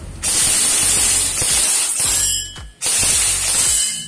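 G&G ARP9 3.0 airsoft electric gun (AEG) firing on full auto: its gearbox cycling in a rapid mechanical rattle. There are two long bursts, the first about two seconds and the second about one second, with a short pause between them.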